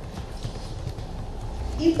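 Computer keyboard keys clicking in an irregular run of keystrokes as text is typed.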